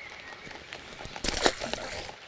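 A short splash about a second and a quarter in as a released fish drops back into the pond.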